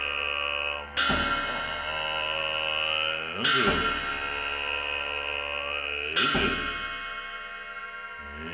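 Large ritual cymbals of cham dance music clashed three times, about two and a half seconds apart, each crash ringing on with a shimmering metallic tone until the next.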